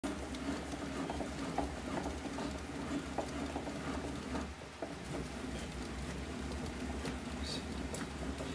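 Composite slowpitch softball bat being turned through a hand-operated bat roller for break-in: light, irregular ticking and crackling as the barrel rolls under pressure, over a steady low hum.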